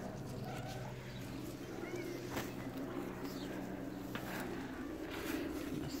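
Leaves rustling and brushing against the phone as plants are handled, over a steady low hum that stops a little before the end, with a faint bird chirp about two seconds in.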